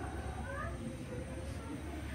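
A cat meowing: a short call that rises in pitch about half a second in, over a steady low hum.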